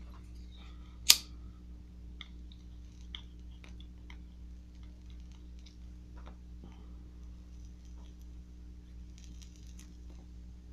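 A sharp lighter click about a second in, then faint scattered small mouth clicks and puffs as a tobacco pipe is drawn on while being lit, over a steady low hum. A soft breathy exhale of smoke comes near the end.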